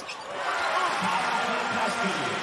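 Arena crowd cheering, swelling about half a second in as a Duke basket goes in, heard through the TV broadcast mix.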